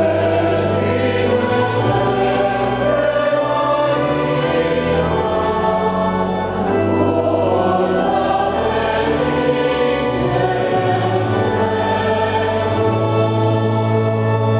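Mixed church choir of men's and women's voices singing together, accompanied by an organ that holds long, steady low notes beneath the voices.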